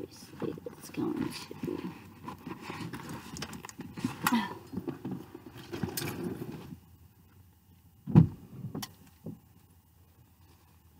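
Clothing rustling and shifting against a car seat, with small knocks and handling noise, as a person climbs out of the driver's seat; it goes quiet about two-thirds through, then a single loud thump about eight seconds in, followed by a smaller knock.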